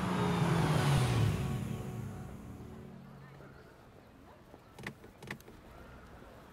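Car pulling up and coming to a stop, its engine note falling as it slows and then fading away. Near the end come two short sharp clicks, a car door latch being worked.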